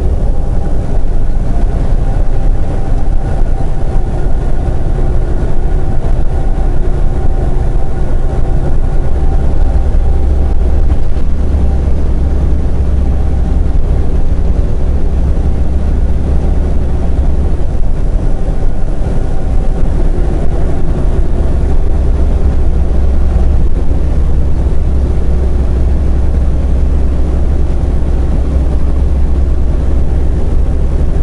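Semi truck's diesel engine running steadily at highway speed, heard inside the cab as a loud low drone mixed with road noise.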